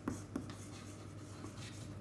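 Chalk writing on a chalkboard, faint: a couple of light taps near the start, then soft scratching strokes as a word is chalked.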